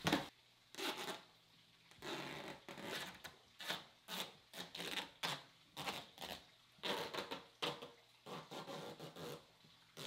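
Grey duct tape being pulled off the roll in a series of short ripping pulls, about half a dozen with pauses between, and pressed onto a plastic tote lid.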